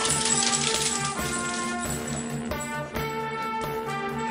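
Background music with a steady beat, overlaid for about the first two and a half seconds by a dense, hissy clatter.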